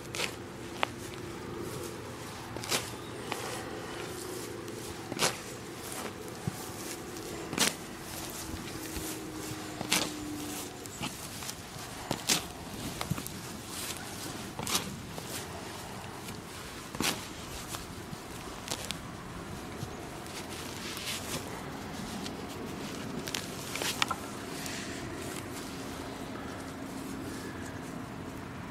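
Spade digging into grassy turf and soil: short sharp crunches every second or two as the blade is stamped in and clods are levered out.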